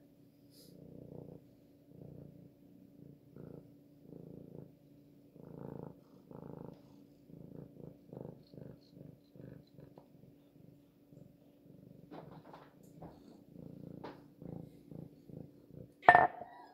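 Domestic cat purring close to the microphone while being stroked, in steady pulses about once a second.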